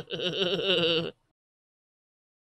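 A woman laughing behind her hand, a wavering, high-pitched held laugh that cuts off suddenly about a second in.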